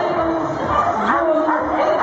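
A dog whining and yipping in drawn-out calls that slide in pitch, with a dip and rise about a second in, over people's voices.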